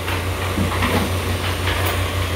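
Steady low droning hum over a constant hiss: the background noise of a room.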